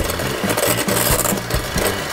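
Electric hand mixer running, its beaters whirring through beaten egg yolks in a stainless steel bowl with a steady motor hum.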